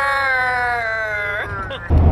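A person's voice holding one long note that slowly falls in pitch, sliding quickly upward just before it stops near the end. Then it cuts to a louder low rumble of car cabin and road noise.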